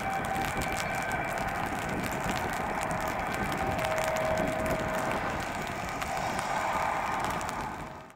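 Steady mechanical whine of airport machinery over a noisy hum, with a few held tones and a lower tone that comes in for a couple of seconds midway. It fades out quickly at the very end.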